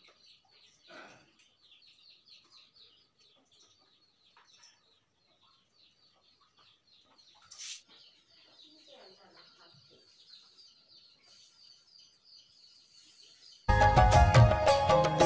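Faint, rapid high-pitched chirping of small birds throughout, with one brief sharp sound about seven and a half seconds in. Loud music cuts in suddenly just before the end.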